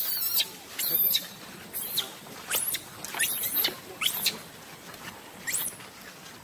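Baby macaque squealing: a series of about seven short, very high-pitched cries, some sliding down in pitch.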